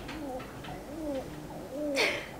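A pigeon or dove cooing, a run of short, soft, low coos that rise and fall in pitch.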